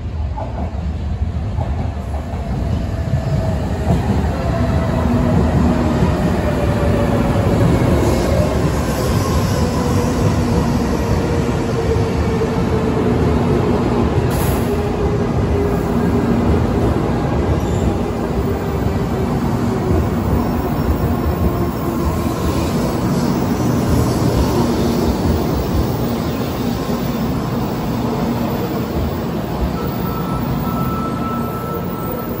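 JR West N700 series 7000 Shinkansen pulling into the platform and slowing to a stop: a steady heavy rumble of the passing train, with a whine that falls slowly in pitch as it decelerates.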